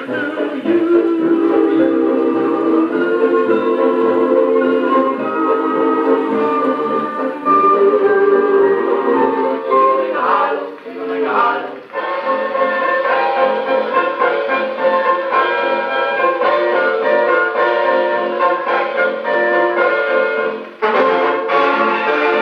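A 1927 dance-orchestra recording with brass playing from a shellac 78 rpm disc through a 1937 HMV Model 721 radiogram, the sound dull with no top treble. The music dips briefly about eleven seconds in and again near the end.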